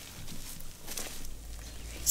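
Quiet outdoor ambience with a few faint footsteps.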